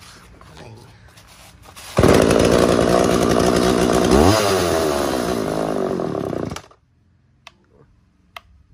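Two-stroke chainsaw engine catching suddenly about two seconds in, running loud for about four and a half seconds with a rev partway through, then cutting out abruptly. It fires on fuel primed into it, its fuel system not yet cleaned.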